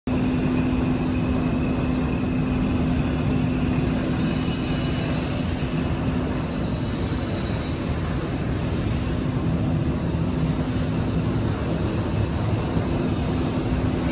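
ZXJ-919-A fiber stuffing machine running during a test: a steady, loud whir from its fan and motor, with a constant low hum underneath.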